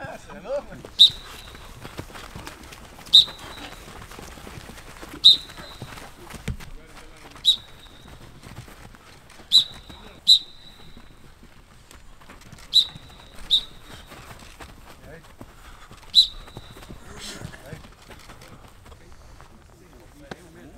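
Short, sharp toots of a coach's whistle, nine in all, roughly every two seconds with two quick pairs, marking the moves of a football warm-up drill. Faint voices lie underneath.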